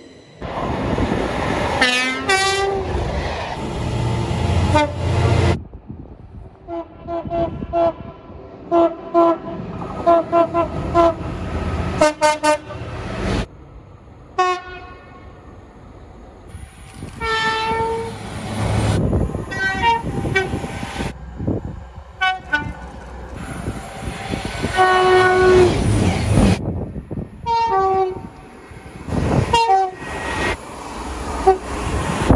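Horns of several passenger trains sounding as they pass at speed. The blasts range from short repeated toots to longer held notes, and some fall in pitch as the train goes by, over the rumble of the passing train. The sound breaks off abruptly several times as one pass gives way to another.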